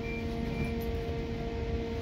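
Steady electric hum holding one pitch over a low rumble, heard inside the passenger carriage of a Northern Class 331 electric multiple-unit train.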